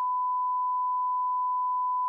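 Broadcast test tone: the steady, unbroken single-pitch beep that goes with colour bars.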